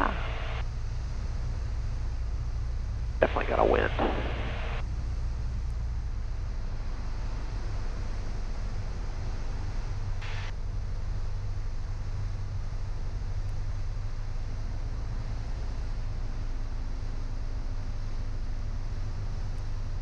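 Piper Cherokee 180's four-cylinder Lycoming engine running steadily as a low, even drone, heard through the cockpit headset intercom on final approach. A brief voice comes in about three seconds in.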